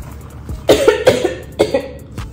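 A woman coughing in two bursts, the first about two-thirds of a second in and a shorter one near the end. She is choking on a spicy chicken nugget.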